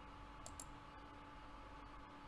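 Two quick computer mouse clicks about half a second in, selecting an item in a slicer, over faint room tone with a low steady hum.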